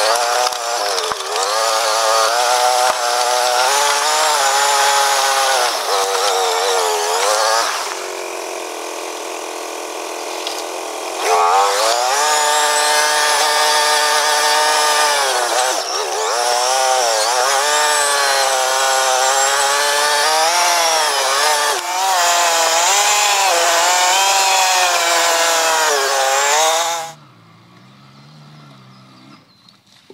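Quad bike engine heard from on board, its pitch rising and falling again and again as the throttle is opened and closed over rough trail. It settles into a steadier, quieter note for a few seconds about eight seconds in. The engine sound drops away sharply a few seconds before the end.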